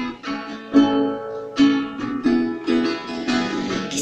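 Background music: acoustic guitar playing an instrumental passage of a song, single notes and chords plucked about once or twice a second.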